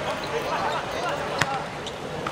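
A football kicked once on an outdoor hard court: a single sharp thud about one and a half seconds in, with players' voices calling around it.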